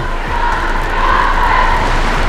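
A low pre-show drone rumbling steadily through a concert sound system as the intro starts, with crowd noise swelling over it about a second in.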